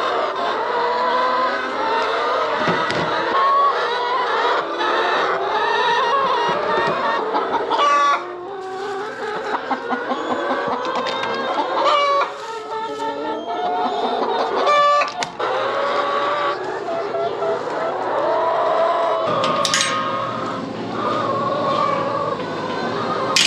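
A flock of chickens clucking and calling without pause, many voices overlapping, with a few sharp clicks now and then.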